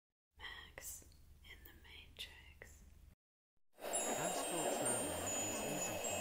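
Faint whispering over a low hum, cut off about three seconds in. After a short silence, an ambient music track begins just before four seconds, with high tinkling chimes over a dense wash of many overlapping voices, typical of layered subliminal affirmations.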